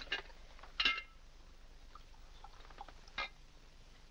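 Medicine poured from a small glass bottle into a cup of tea on a china tea tray: a few short sounds, the loudest about a second in and another a little after three seconds.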